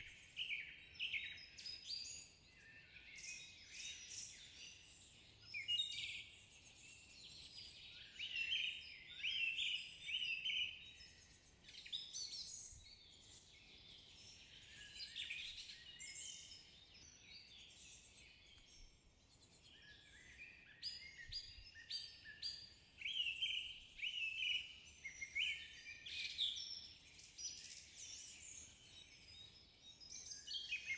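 Faint forest birdsong: birds chirping in short bursts on and off, with a lull a little past the middle.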